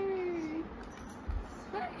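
Newborn baby crying: the end of a long wail that slides slowly down in pitch and stops about half a second in.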